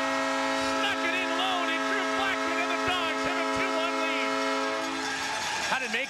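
Ice-hockey arena goal horn sounding one long, steady blast, which cuts off about five seconds in: the signal of a home-team goal. A crowd cheers and shouts over it.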